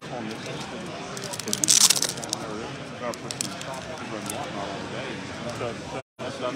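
Plastic-and-foil trading-card packaging crinkling and crackling as it is handled, loudest in a dense burst about two seconds in, followed by a few scattered crackles, over steady crowd chatter.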